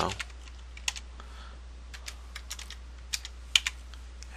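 Computer keyboard typing: about a dozen keystrokes, scattered and in short quick runs, as hex colour codes are entered. A steady low hum sits underneath.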